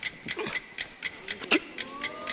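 Quick, even ticking of a bomb's timer, played as a stage sound effect to signal that the bomb is counting down.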